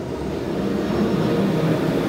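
Steady roar of background noise in a large hall, with faint, indistinct voices mixed in, swelling slightly toward the end.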